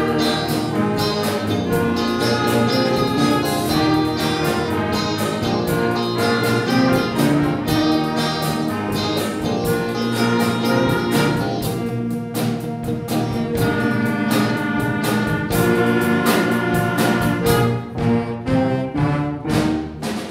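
Wind band of saxophones and other winds with drum kit and percussion playing a piece together, with the drums keeping a steady beat. The loudness dips briefly a few times near the end.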